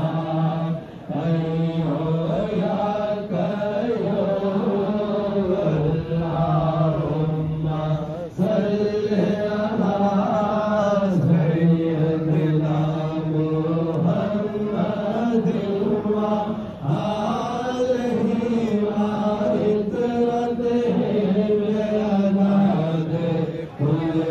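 Men's voices chanting a devotional Sufi dhikr in long held notes, in phrases of about seven to eight seconds, each ending with a short break for breath.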